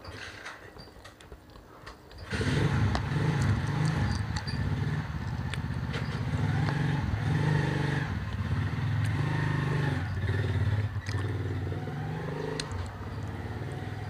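A motorcycle engine starts running loudly close by about two seconds in, its pitch wavering unevenly, and fades near the end. Before it, light clicks of a plastic fork in a food container.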